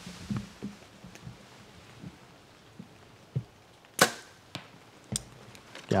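A compound bow being shot: one sharp, loud snap of the string and limbs at release about four seconds in, followed about a second later by a fainter click.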